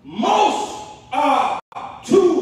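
A man's voice preaching into a handheld microphone, in two short phrases that the recogniser could not make out as words. The sound cuts out completely for an instant about one and a half seconds in.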